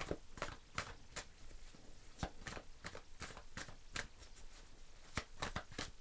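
A deck of tarot cards being shuffled by hand overhand-style: a faint, irregular run of soft card clicks and slaps, about two to three a second.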